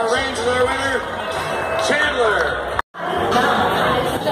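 Music and voices over a ballpark's loudspeakers with crowd noise, broken off by an abrupt cut about three seconds in. After the cut, music and chatter echo in a large room.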